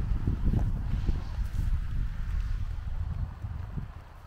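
Wind buffeting the microphone: an uneven low rumble that eases off near the end.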